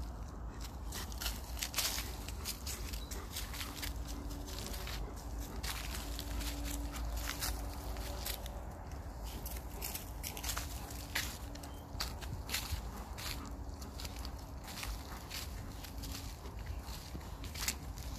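Footsteps crunching and rustling through frosted dry fallen leaves: many irregular short crackles over a low steady rumble.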